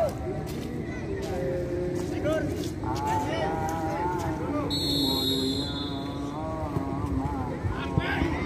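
Outdoor football-pitch sound: people calling and shouting across the field, over a steady low engine drone from a vehicle. About five seconds in, a high, steady whistle sounds for about a second.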